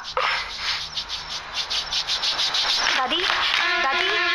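A long, forceful blow of breath with a rapid fluttering rattle, from a man giving an old woman mouth-to-mouth. A short vocal sound comes near the end, and then sustained music tones begin.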